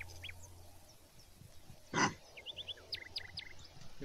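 A trapped paca (gibnut) gives one short, harsh grunt about halfway through. Faint bird chirps sound in the background.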